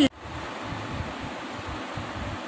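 Steady background hiss of room noise, even and unchanging, with a brief drop right at the start.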